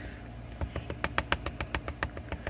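Light, quick clicks and taps, several a second, from fingers and fingernails pressing and shifting on a clear acrylic stamp block held down on cardstock, over a faint steady hum.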